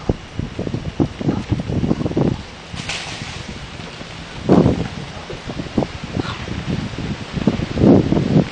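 Wind buffeting the camera microphone in irregular low gusts, with a brief rustle about three seconds in.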